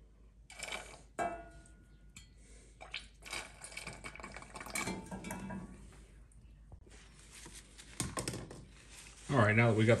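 Stainless steel pan being handled: scattered clinks, knocks and scrapes of metal, with light water sounds, as its water is drawn off with a plastic squeeze bottle and it is set on a gas stove's grate.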